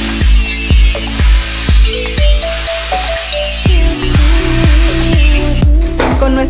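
Electronic background music with a steady beat, about two beats a second. Under it, an angle grinder grinds steel tube ends with a high hiss that stops shortly before the end.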